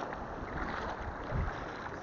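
Shallow sea surf washing through foam around a wader, with wind buffeting the microphone and a brief low bump about one and a half seconds in.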